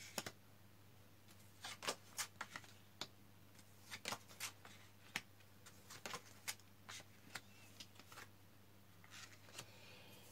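Tarot cards being dealt one at a time from the deck onto a wooden tabletop: faint, irregular snaps and taps as each card is slipped off and laid down.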